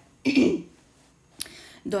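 A person clears their throat once, briefly, then there is a short sharp click about a second later.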